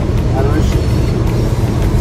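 Steady low rumble of road and engine noise inside a Mercedes-Benz van's cabin while it drives at motorway speed, with a brief voice about half a second in.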